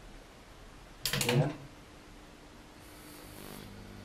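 A man says "yeah"; then, about three seconds in, a faint low steady electrical hum comes up, from the mains-powered magnetron supply of a homemade copper-cone EM-drive test rig.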